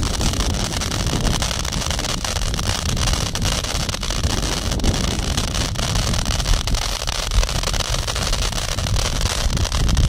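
Ground fireworks throwing showers of sparks: a steady, dense rumbling roar with fine crackling ticks all through it, heavy low-end buffeting on the microphone.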